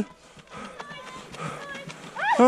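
Faint distant voices with light footsteps of runners on a gravel path, in a lull between shouts.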